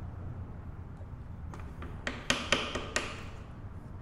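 A hammer tapping a hardwood dowel held against the notched spring preload collar of an electric dirt bike's rear shock, about seven quick, light taps in a row from halfway in. Each tap turns the collar a little further to compress the spring and raise the preload.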